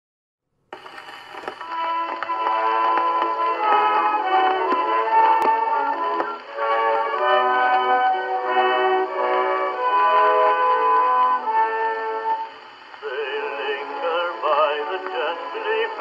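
Song playing: an instrumental opening of held chords, then a singer comes in with vibrato about 13 seconds in. The sound is thin, with no bass and no top, like an old recording.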